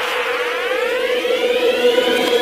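Electronic riser effect from an outro jingle: a held synth tone under a cluster of slowly rising sweeps and hiss, steadily building.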